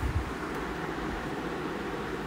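Steady background hiss of room noise, with one brief low bump right at the start.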